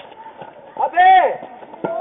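A man's loud drawn-out shout on a baseball field, rising then falling in pitch, about a second in, over faint background chatter from players.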